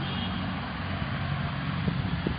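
Steady background noise: a low hum under an even hiss.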